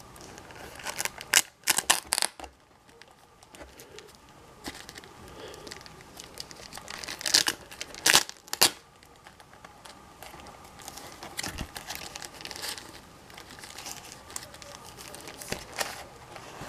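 Glossy 8x10 photos being rummaged through and pulled from a cardboard box: intermittent rustling and crinkling of paper, with a few sharper scrapes and taps clustered near the start and again just past the middle.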